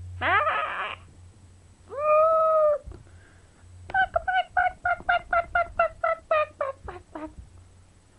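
A woman making silly vocal noises: a quick rising squeal, then a long held hooting note about two seconds in, then a rapid run of about a dozen short pitched syllables, roughly four a second.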